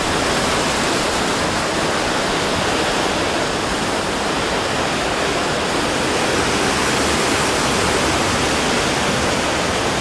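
Steady, loud rush of water from a large artificial waterfall pouring into a shallow fountain pool.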